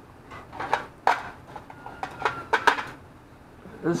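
Small plastic parts-cabinet drawer being pulled open and rummaged through: a handful of sharp clicks and light rattles of small parts, spread over a few seconds.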